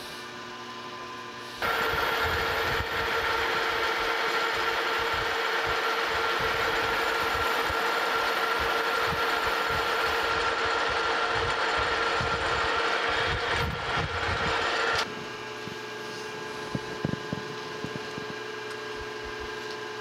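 Metal lathe running while a boring bar takes a light pass inside a brass bushing to enlarge the bore. It is a steady machine run that switches on about a second and a half in and cuts off about three-quarters of the way through, over a quieter steady hum, with a few small clicks after it stops.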